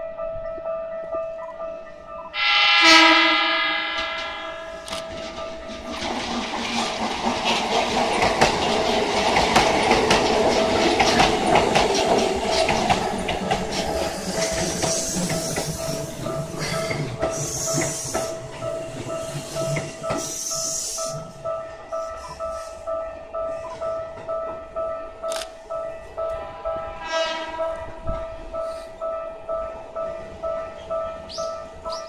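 A level-crossing alarm rings in a steady, repeating pulse. About two and a half seconds in, a Keikyu 800 series electric train sounds one loud horn blast, then passes the crossing with a rising rumble and wheel clatter, and high squeals from the wheels midway through. A second, fainter horn sounds near the end.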